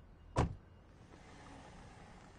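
A car door shutting with a single thump about half a second in, followed by the faint low rumble of the car pulling away.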